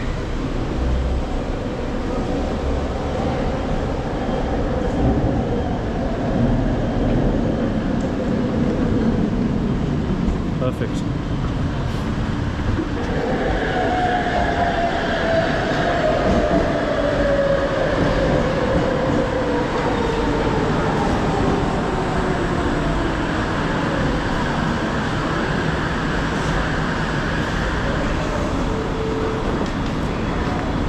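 Rapid KL LRT train pulling into the platform: from about 13 s in, its whine falls steadily in pitch over about ten seconds as it slows, over a loud station background.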